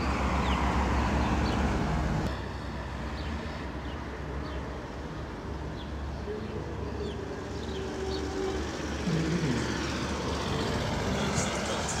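Steady street traffic noise with a low rumble that drops a little about two seconds in. A few faint short high chirps come through now and then.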